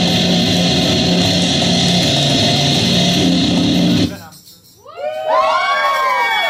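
Live rock band playing loudly with electric guitars. About four seconds in the music cuts off abruptly. After a short quiet gap, a cluster of overlapping tones slides up and down in pitch.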